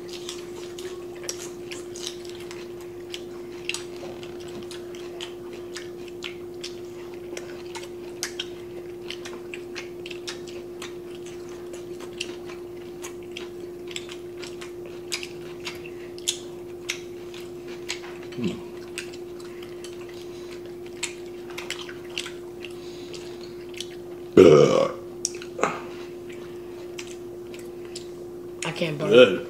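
Small clicks of chopsticks and a spoon against bowls and dishes while eating, over a steady hum. About three-quarters of the way through comes one loud burp.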